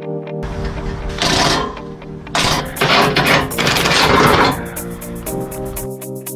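Cordless impact wrench hammering on a bolt of a truck frame: a short burst about a second in, then a longer, louder run of about two seconds. Background music plays under it.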